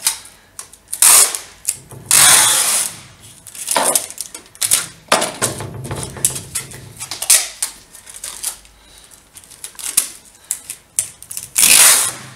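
Clear adhesive tape being pulled off its roll and pressed onto the glass of a mirror: several loud rasping pulls of about a second each, with many short crackles and clicks of the tape in between.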